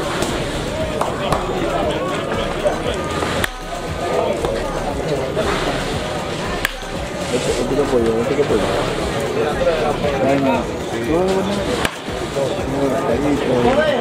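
Several people calling and chattering loudly throughout. A few sharp cracks of a baseball bat hitting pitched balls cut through.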